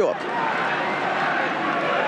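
Football stadium crowd: a steady din of many voices from the stands.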